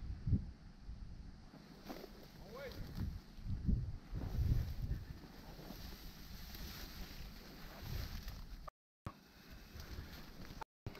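Wind buffeting the microphone in uneven low gusts, over rustling of ferns and dry branches. The sound cuts out briefly near the end.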